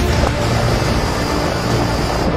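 Background music mixed with a steady, loud rushing noise.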